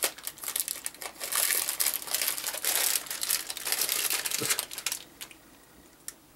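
Foil-lined cookie wrapper crinkling and crackling as it is opened and handled, dying away about five seconds in.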